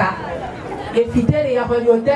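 Speech only: a woman talking in French into a handheld microphone, with people chattering around her.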